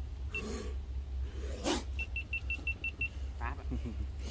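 A single short high electronic beep, then about a second and a half later a quick run of seven identical beeps, about seven a second, over a steady low rumble. A brief rustling noise comes just before the run of beeps.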